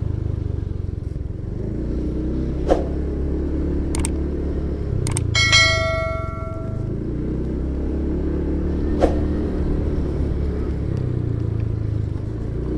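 Motorcycle engine running at a steady low speed, heard from the rider's seat, with a few short knocks along the way. About halfway through, a brief ringing tone sounds for a second or so.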